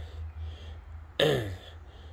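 A man clearing his throat once, a short rough vocal sound that falls in pitch, about a second in, over a steady low hum.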